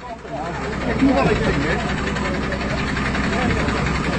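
A lorry's diesel engine running, swelling about a second in and then holding steady, with crowd voices over it.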